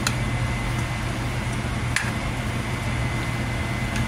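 A steady low machine hum with an even hiss, like a kitchen fan running, with two light clicks: one at the start and one about two seconds in.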